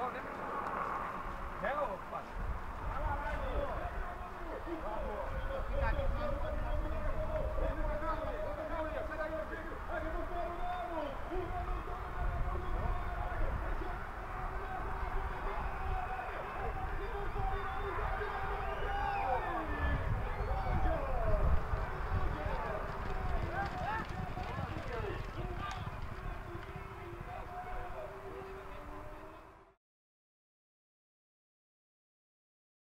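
Trackside sound of people's voices calling and talking over a steady low wind rumble on the microphone.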